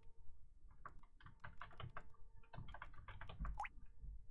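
Computer keyboard being typed on: a quick, uneven run of faint key clicks with brief pauses between groups.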